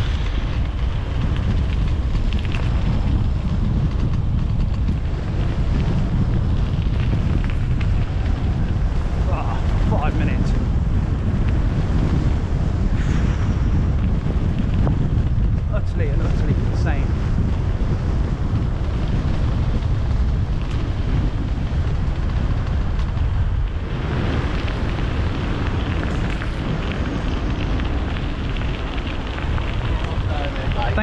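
Wind buffeting the microphone of a camera riding on a fast-moving homemade e-bike: a steady, loud rumble.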